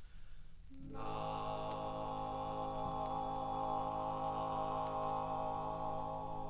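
Barbershop quartet of four male voices holding a long, steady wordless chord that comes in about a second in, the low bass note sounding a moment before the upper parts join.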